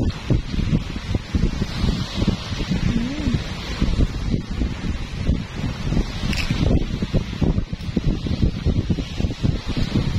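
Wind buffeting the microphone in an uneven low rumble, over the steady hiss of small waves washing onto a sandy shore.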